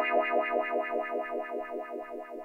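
A held, distorted musical note with a regular wobble in pitch, fading slowly: a comic sound effect added in the edit.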